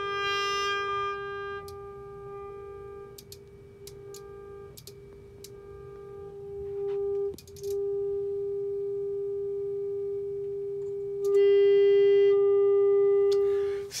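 A steady mid-pitched test tone played through a Marshall JCM 800 valve amp head into a padded-down speaker. The tone's loudness and buzz shift in steps as the amp's volume controls are turned, with a few faint clicks along the way. Near the end it gets louder and buzzier as the amp is driven into distortion and harmonics build up.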